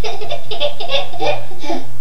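A toddler laughing hard in a string of quick bursts that stops near the end, over a steady low hum.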